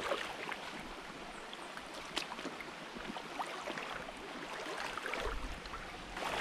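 Shallow rocky stream trickling, with irregular splashes of feet wading through the water. A low rumble comes in near the end.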